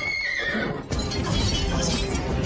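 A horse whinnies, a wavering call that falls away in the first half-second, over film music. A sharp hit comes about a second in as the music carries on.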